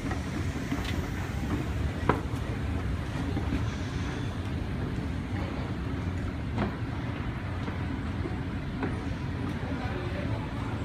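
Montgomery escalator running: a steady low mechanical rumble from the moving steps and drive, with a few short sharp clicks, the clearest about two seconds in and again past six seconds.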